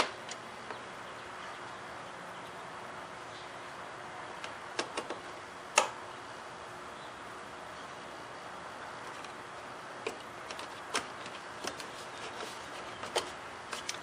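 Plastic push-pin retainers being pressed back into a car's trunk trim panel: a handful of scattered sharp clicks over a steady faint hiss, the loudest about six seconds in.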